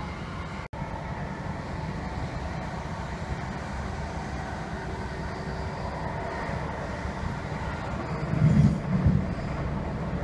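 Class 321 electric multiple unit heard from inside the carriage while running along the line, a steady low rumble of wheels on track. The sound drops out for a split second just under a second in, and a louder low rumbling comes through for about a second near the end.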